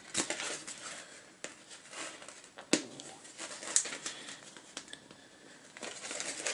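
Stiff plastic sleeve panel crinkling in the hands, with small scattered clicks as the punched-out binder-hole tabs are pushed free; one sharper snap near the middle.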